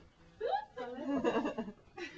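A person's voice: a quick rising vocal sound about half a second in, then about a second more of voice without clear words.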